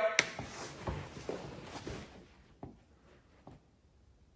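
A sharp click, then a few faint soft taps and shuffling in a small room, as people settle on a couch to start a video.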